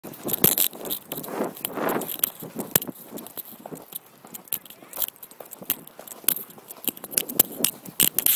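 Riding a cantering horse, heard from the saddle: a run of irregular clicks and knocks from the gait and the jostled handheld recorder, with a short rush of noise about one to two seconds in.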